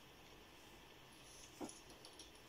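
Near silence with faint pencil scratching on paper, and one brief squeak about one and a half seconds in.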